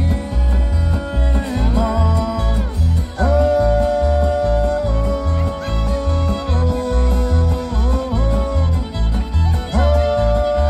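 Live acoustic string band playing a bluegrass-style tune: long held fiddle notes that slide up into pitch, over strummed acoustic guitars and an upright bass plucking a steady beat of about two notes a second.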